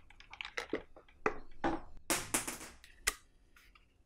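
Pen box and its cardboard packaging being handled: a string of light taps and clicks with rustling swishes, and a sharp click about three seconds in.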